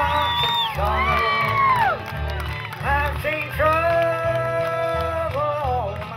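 Live bluegrass band playing: banjo and acoustic guitars over a pulsing upright bass, with a melody line that slides in pitch and holds one long note about midway.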